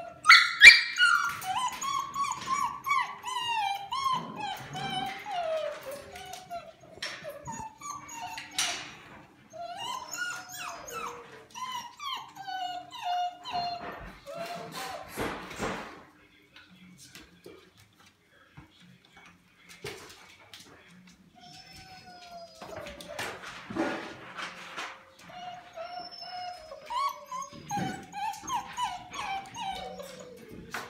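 Golden retriever puppies whining and whimpering in a string of high, sliding cries, with a few short bursts of scuffling noise. The whining drops away for several seconds in the middle, then picks up again near the end.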